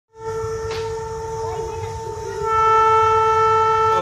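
Single-coach railbus sounding one long, steady horn note that grows louder and brighter about two and a half seconds in, over the low rumble of its running.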